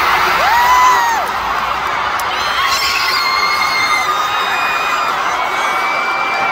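Large arena crowd cheering and screaming, with several long, high held screams standing out above the general noise.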